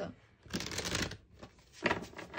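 A tarot deck being shuffled: one short burst of card noise lasting under a second.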